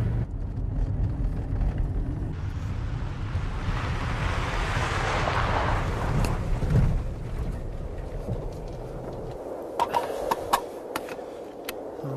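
Pickup truck driving on a dirt road: a steady engine rumble, with a rush of tyre and road noise that swells to its loudest about five seconds in and then fades. A few sharp clicks near the end.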